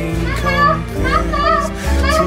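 A toddler's voice babbling over background music with sustained bass notes.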